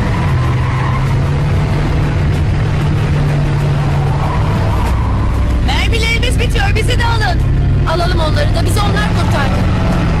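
Airliner engines running with a steady low drone that settles slightly lower in pitch at the start. About six and eight seconds in, two bursts of high, wavering cries rise over it.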